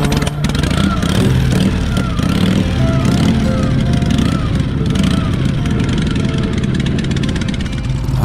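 Vintage Harley-Davidson chopper V-twin engines being kick-started and running, with background pop music laid over them.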